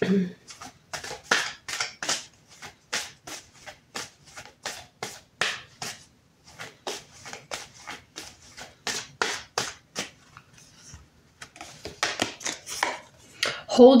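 Oracle cards being shuffled by hand: a long run of short soft snaps, two or three a second, with a couple of brief pauses, as the deck is shuffled before a card is drawn.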